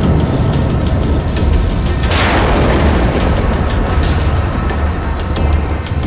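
Suspense background score: a steady low drone with one sudden hit about two seconds in that sweeps down in pitch.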